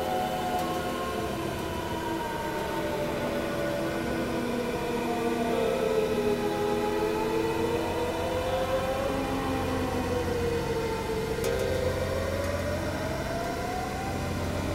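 Experimental synthesizer drone music: layered held tones, one of them slowly rising and falling in pitch, over lower sustained notes that shift every second or two and a dense low rumble.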